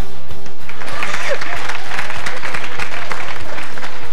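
A studio audience applauding and laughing, swelling in about a second in, over background music.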